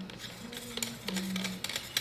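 Light ticks and clicks of the Outex Dome 180's ring and housing parts being handled and twisted into place by hand, with two short steady low tones in the middle.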